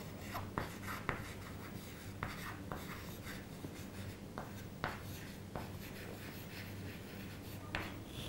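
Chalk writing on a chalkboard: faint scratching strokes with scattered sharp taps of the chalk against the board, over a low steady hum.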